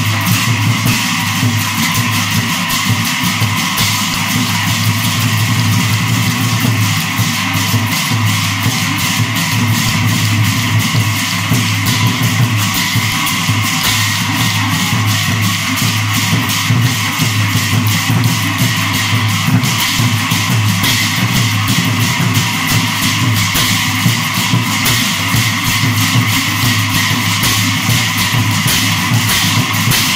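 Ojapali devotional music: many large hand cymbals clashing together in a fast, unbroken rhythm.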